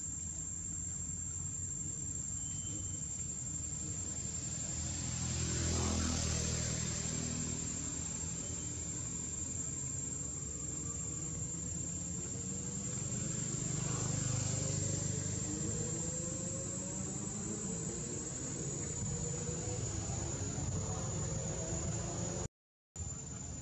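A steady high-pitched drone of insects, such as crickets or cicadas, runs under the low hum of engines. The engine hum swells twice, about six seconds in and again around fourteen seconds, with slowly rising engine tones later on, like vehicles passing.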